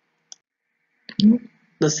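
A single short, sharp click about a third of a second in. About a second in it is followed by a brief, loud mouth and voice sound from the lecturer, just before his speech resumes.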